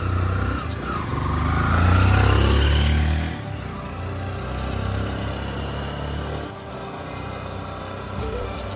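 A motor vehicle's engine rising in pitch as it accelerates, loudest about two seconds in, then cut off abruptly a little after three seconds, giving way to quieter background music.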